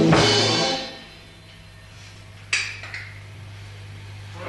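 A rock band's drum kit, electric guitar and bass end a song on a final hit that rings out and fades within about a second. A low steady hum remains, broken by a single sharp knock about two and a half seconds in.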